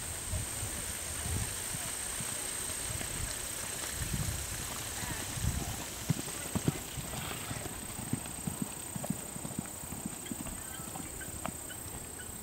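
Hoofbeats of a mare cantering on a sand arena: a run of dull thuds, with sharper, more distinct hoof strikes from about halfway through.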